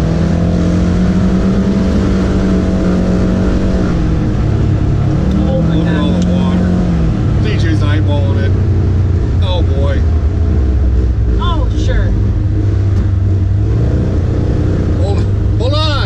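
Polaris General side-by-side's engine running under way on a dirt road. Its speed holds steady, then drops about four and seven seconds in and runs lower through the second half.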